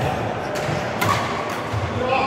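Badminton rally: a sharp crack of a racket hitting the shuttlecock about a second in, with dull thuds of players' footwork on the court floor.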